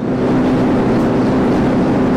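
Yamaha NMAX 155 scooter's single-cylinder four-stroke engine running steadily at a cruising speed of about 85 km/h, a constant even hum under a rush of wind and road noise.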